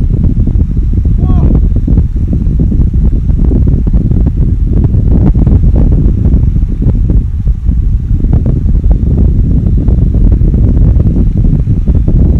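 Wind buffeting the microphone: a loud, unsteady low rumble. A brief high pitched call or cry sounds about a second in.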